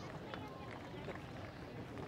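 Faint outdoor ballpark ambience with scattered distant voices and a few short faint clicks.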